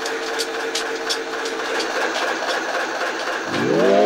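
Quiet breakdown of an instrumental hip-hop beat: a steady droning tone over hiss, with soft hi-hat-like ticks about three a second. Over the last half second a rising pitch sweep builds into the return of the full beat.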